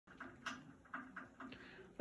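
A few faint, soft taps and rustles, about five in two seconds, irregularly spaced.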